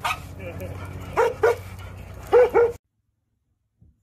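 A dog barking: short sharp barks in two pairs over a steady low hum, then the sound cuts off suddenly about three-quarters of the way through.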